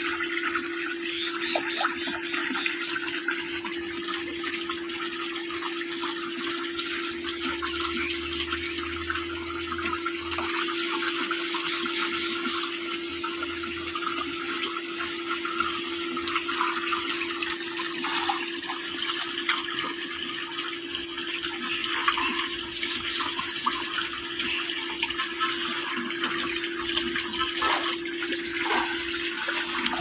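Water pouring from a plastic pipe into a shallow concrete tank, a steady splashing rush, with a steady hum underneath.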